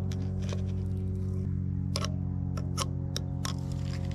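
Needle-nose pliers clicking against the threaded port of a log splitter's hydraulic control valve while a wad of paper is pulled out of it: a handful of light, sharp clicks, the clearest about two seconds in. Under them, a steady low droning hum.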